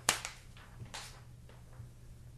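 A sharp click right at the start, then two fainter clicks about a second and nearly two seconds in.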